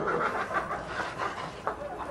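A person laughing breathily, with almost no voiced tone, dying down near the end.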